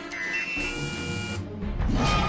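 Electronic door control panel chirping as a hand presses it, then a steady electronic buzz for about a second, over orchestral score music that swells louder near the end.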